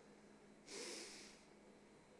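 Near silence, broken about two-thirds of a second in by one short, hissy breath drawn in by a man close to a handheld microphone.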